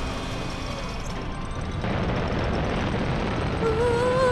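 Animated rocket boosters firing for lift-off: a steady rushing noise that grows louder about two seconds in. A short pitched sound comes in near the end.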